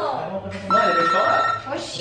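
A steady electronic beep lasting just under a second, starting and stopping abruptly, over voices.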